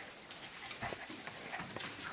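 Two dogs play-wrestling on a tiled floor: scattered clicks of claws and paws on the tiles amid scuffling.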